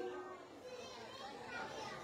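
A pause in a man's talk: only faint background voices at low level.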